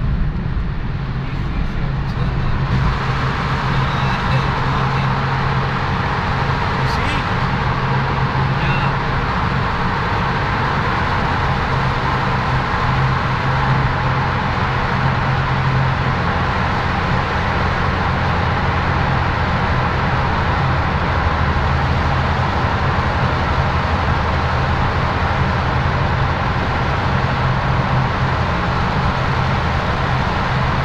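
Steady road noise of a car driving through a highway tunnel, heard from inside the car: tyre and engine noise with a constant low hum. It grows louder and brighter about three seconds in as the car enters the tunnel, then holds steady.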